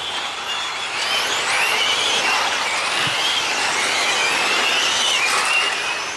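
Several electric 1/8-scale GT RC race cars running at speed, their brushless motors whining in overlapping tones that rise and fall in pitch as the cars accelerate and slow for the corners.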